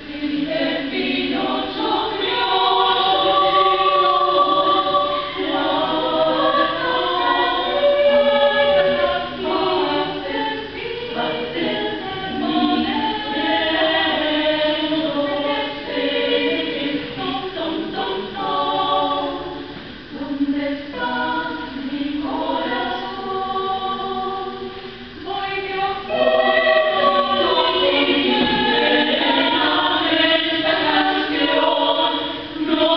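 Women's choir singing in several parts, with long held chords phrased by short breaks between lines.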